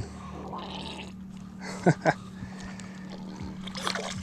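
Hooked catfish splashing at the surface beside a boat, with two sharp splashes about two seconds in and another brief splash near the end, over a steady low hum.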